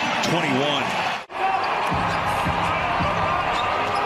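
A basketball dribbled on a hardwood arena court: a steady run of bounces under arena crowd noise, which follows an abrupt edit cut.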